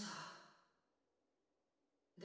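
A short voiced sigh that fades out within the first half-second, followed by near silence.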